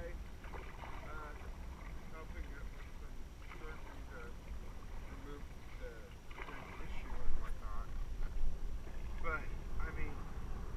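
Indistinct voices of people talking in an inflatable raft, over a steady low wind rumble on the microphone. Paddles splash in the water in the last few seconds, where it gets louder.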